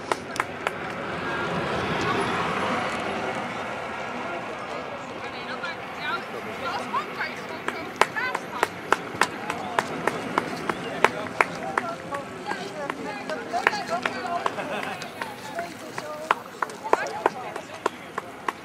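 Indistinct voices of a group of people talking. From about six seconds in there are scattered sharp clicks, a few a second.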